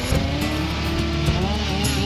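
Stihl two-stroke chainsaw engine running at idle, a steady low drone, with background music playing over it.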